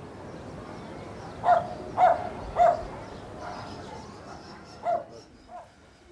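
A dog barking over a steady background hum of the town: three short barks about half a second apart in the middle, then one more near the end.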